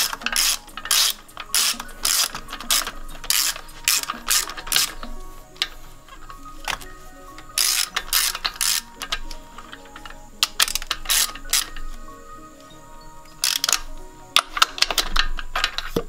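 Socket ratchet on a long extension clicking in quick runs of strokes, with short pauses between runs, as a spark plug is run into the cylinder head.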